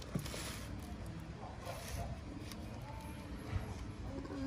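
Low steady background rumble with a few faint knocks and rustles from handling.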